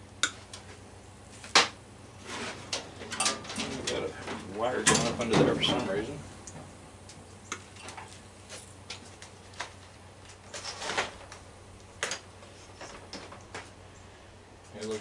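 Wire cutters snipping furnace wiring: a series of sharp snips and clicks with the rustle and scrape of wires being pulled from the sheet-metal cabinet, and a short low vocal sound about five seconds in.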